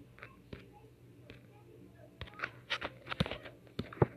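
Faint handling noise close to the microphone: scattered sharp clicks and rustles that bunch together about two to three seconds in, over a low steady hum.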